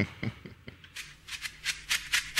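A quick, uneven series of sharp clicks, about six a second, from about halfway through, over a faint low steady hum.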